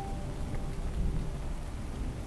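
Heavy rain falling steadily, with a low rumble of thunder underneath.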